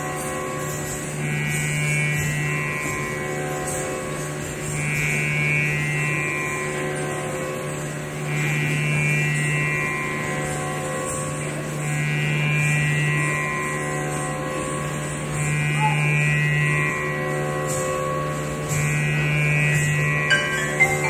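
A steady, buzzing musical drone on one low note, rich in overtones, the kind of sustained drone that underlies Indian classical music. It swells and eases in an even pulse about every three and a half seconds.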